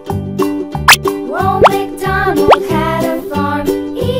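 Children's background music with a steady beat, with three quick rising-pitch sound effects laid over it in the middle.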